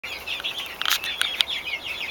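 Small birds chirping in quick, high-pitched peeps, with three sharp clicks near the middle.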